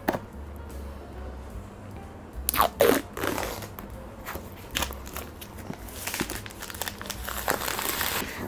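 Plastic shrink-wrap on a smartphone box being cut with scissors, then torn and peeled off, crinkling in irregular bursts that are loudest a couple of seconds in.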